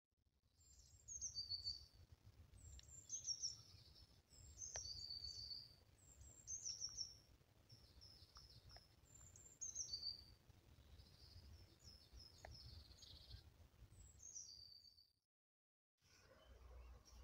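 A songbird singing short, high phrases of quickly falling notes, repeated every second or two, over a faint low rumble.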